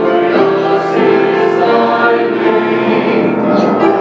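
Mixed choir of men's and women's voices singing together, holding long sustained notes.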